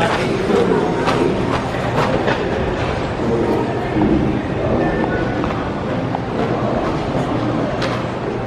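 The din of a busy railway station concourse: echoing crowd chatter and footsteps over a steady low rumble, with train sounds carrying from the tracks.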